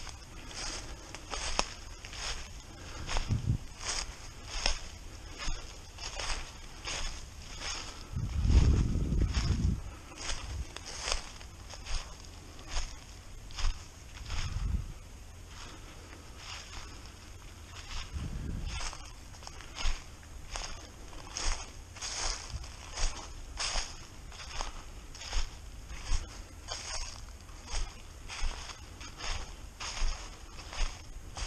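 Footsteps crunching through a thick layer of dry fallen leaves at a steady walking pace, a little over one step a second. A few brief low rumbles come in between, the loudest about eight seconds in.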